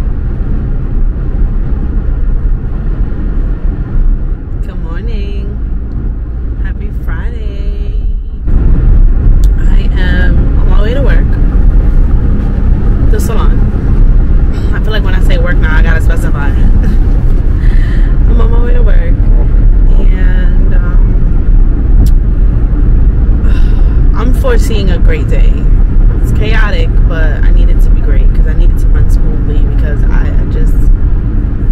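Steady road and engine rumble heard inside a car's cabin at highway speed, getting louder about eight seconds in, with a woman talking over it for much of the time.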